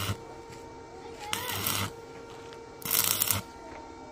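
Stick (arc) welding on a steel frame: short bursts of sharp crackling as the electrode arc is struck for brief tack welds. Two bursts of well under a second come about a second and a half apart, after the tail of one right at the start.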